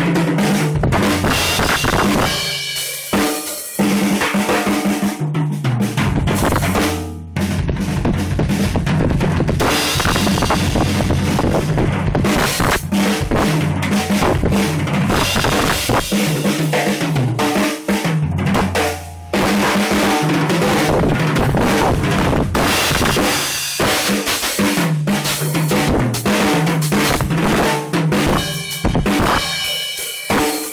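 Acoustic drum kit played in a fast, busy solo: kick drum, snare, toms and cymbals struck in quick succession, with a few brief breaks.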